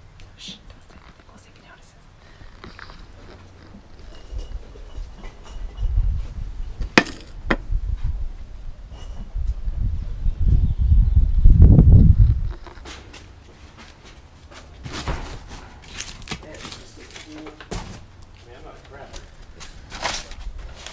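Low, loud rumbling on the microphone from the camera being moved, building from about four seconds in and cutting off after about twelve seconds, with a couple of sharp knocks partway through.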